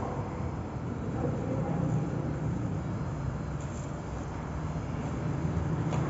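Steady low background rumble with a hiss over it, vehicle-like noise in a car park, with no distinct events.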